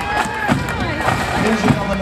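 Pipe band music, bagpipes and drums, mixed with crowd voices and clapping.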